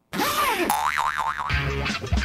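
Produced segment-intro stinger starting suddenly: a cartoon-like sound effect whose pitch arcs and then wobbles up and down, followed about one and a half seconds in by music with a heavy bass beat.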